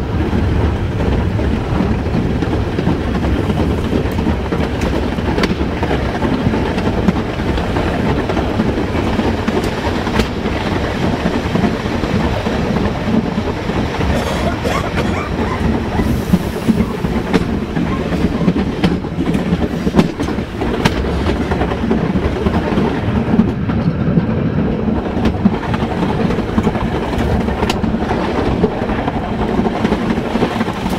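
Metre-gauge electric train running along the track, heard from inside its rear cab: a steady rumble of wheels on rail with scattered sharp clicks.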